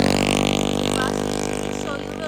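A motorcycle's engine passing close, a steady hum that fades as it moves away.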